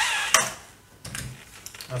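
A gas blowback replica pistol and its magazine being handled: a sharp click about a third of a second in, then a run of small clicks and knocks, with a brief voice at the start.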